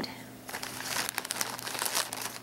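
Small paper floss envelopes being flipped through and a clear plastic quart-size zip-top bag crinkling in the hands: a run of irregular rustles and crackles.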